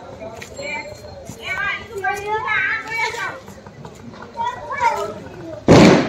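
Faint voices of children and people talking in the background, then a sudden loud noise burst lasting about a third of a second near the end.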